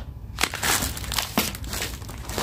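Plastic packaging crinkling and rustling as hands rummage through a cardboard delivery box, with two sharp crackles, one about half a second in and one near the end.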